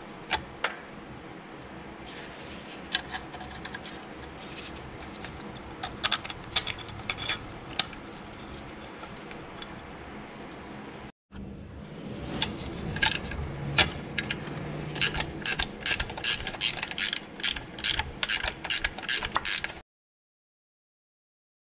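Ratchet wrench clicking as the power steering pump bracket bolts are tightened, scattered clicks at first, then quick runs of clicks in the second half.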